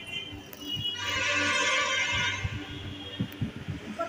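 A high, ringing tone that starts about a second in, holds for about a second and a half, then fades. Low knocks and thumps from the phone being carried sound under it.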